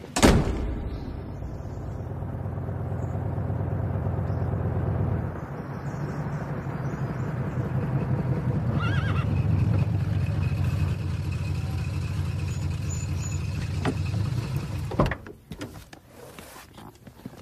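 A door slams, then a car engine runs steadily with a low hum. A horse whinnies briefly about nine seconds in, and the engine cuts off suddenly near the end.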